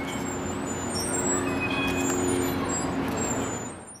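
Steady motor-vehicle and traffic noise, a running engine's low hum under a hiss, fading out at the very end.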